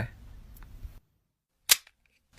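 A single short, sharp click near the end, standing alone in dead silence.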